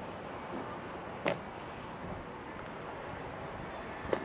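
Steady outdoor background noise with a single short click a little over a second in.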